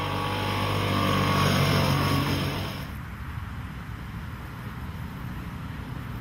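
The Maikäfer's 200 cc single-cylinder two-stroke engine running as the small car drives toward the camera, growing louder for about two seconds. A little under three seconds in, the sound drops suddenly to a quieter, rougher engine note.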